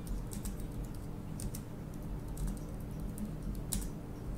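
Computer keyboard being typed on: a run of irregular key clicks, one louder click near the end, over a steady low hum.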